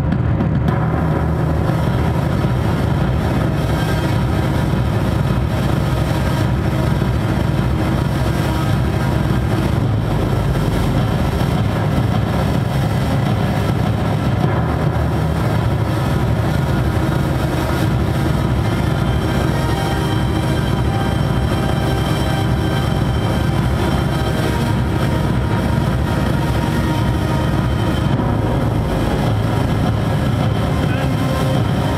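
Loud live industrial electronic music through a PA: a dense, steady, droning mix of synthesizer and electric guitar with a heavy low end and no clear pauses.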